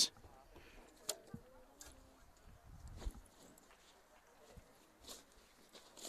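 Quiet ballpark lull: faint distant voices from the field and stands, with a couple of soft knocks.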